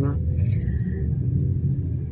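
Sightseeing bus driving through city streets, heard from inside: a steady low engine and road rumble.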